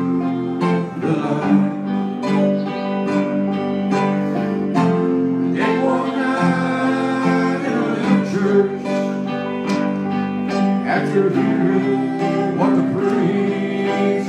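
Live gospel song: a voice singing over guitar and electric keyboard accompaniment.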